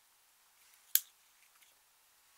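A single sharp click about a second in as a plastic eyeshadow compact is knocked against a hard surface, followed by a few faint ticks of crumbling powder and small bits.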